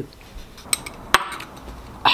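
Metal spoon clinking against a clear glass breakfast bowl: two sharp clinks a little under half a second apart, around the middle.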